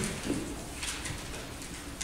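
Pages of a Bible being turned on a pulpit: soft paper rustles about a second in, with a brief low sound just after the start.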